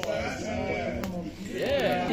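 Men's voices in a group, vocalising without clear words, with a louder voice wavering in pitch near the end.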